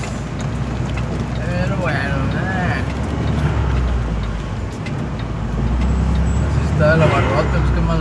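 Steady low drone of a vehicle being driven, heard from inside the cabin, growing heavier from about halfway through. A voice is heard briefly about two seconds in and again near the end.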